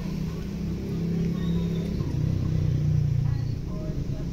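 Motor vehicle engine and road noise while driving, a steady low drone whose pitch drops slightly about halfway through.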